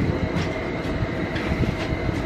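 Steady low rumbling noise with a faint steady high-pitched hum running through it, like a running appliance or fan, with a few faint knocks.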